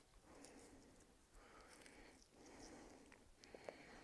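Near silence, with a few faint small clicks and rustles as the papery skin of a fresh oerprei bulb is peeled off by fingers and teeth.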